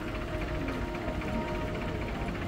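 Background music with long held tones over a steady low rumble.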